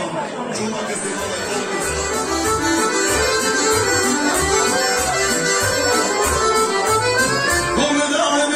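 Live Balkan folk band music led by accordion, playing a kolo dance tune over a steady bass beat.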